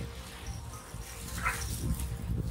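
A small dog gives one short, high cry about one and a half seconds in, over a low rumble.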